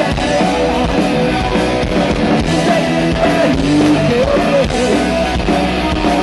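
A punk rock band playing live: electric guitar, bass guitar and a drum kit, loud and steady throughout.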